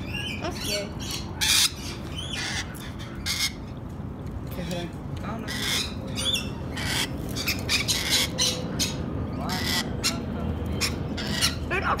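A flock of rainbow lorikeets squawking, giving many short, harsh screeches in quick succession throughout.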